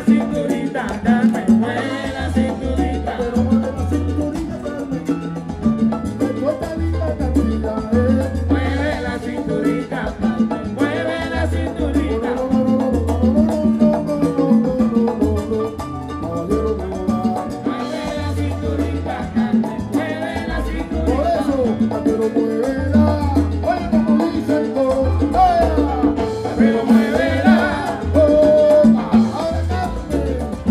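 A live salsa band playing, with a pulsing bass line and percussion holding a steady groove.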